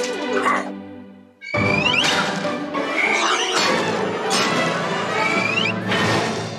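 Bowed strings (violins) play steady notes that die away about a second and a half in. Then a loud, noisy jumble with repeated rising squeals breaks in suddenly and carries on.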